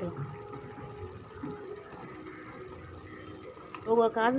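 Thick spiced gravy (kuzhambu) simmering in an aluminium kadai: a soft, steady bubbling with small irregular pops.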